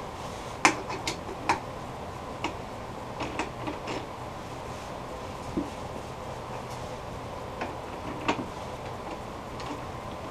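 Scattered metal clicks and knocks as a bowl blank is seated in the step jaws of a four-jaw lathe chuck and the chuck's T-key is turned to tighten the jaws, the sharpest knock about a second in.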